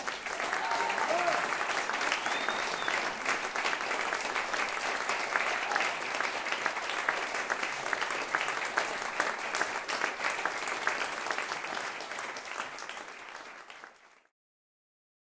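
Audience applauding at the end of a performance, a dense steady clapping that fades away over the last couple of seconds.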